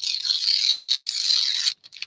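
Sheets of paper torn by hand: two ripping tears, each under a second long, the second starting about a second in.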